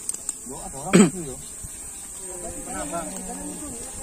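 A steady high-pitched drone of insects in the vegetation, with men's voices calling over it. One loud call comes about a second in, and fainter voices follow near the end.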